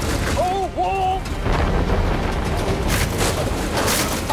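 Demolition-derby vehicles colliding over a continuous heavy engine rumble, with a loud crash about three seconds in.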